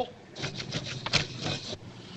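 A stiff hand brush scraping in short, irregular strokes.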